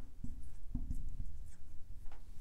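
Writing on a blackboard: faint scratching strokes as a bracket and figures are drawn.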